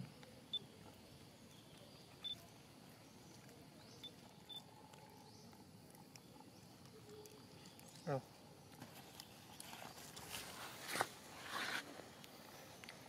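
Faint outdoor ambience with a few short, high chirps scattered through it, and one brief voice-like call about eight seconds in. Some rustling and scuffing sounds come near the end.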